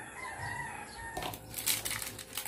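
A rooster crows faintly for about a second. Then, from a little past the first second, come sharp crackling clicks of an eggshell being cracked open by hand.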